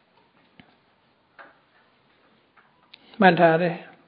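A man's voice speaks one short phrase near the end, after about three seconds of near quiet broken only by a few faint clicks.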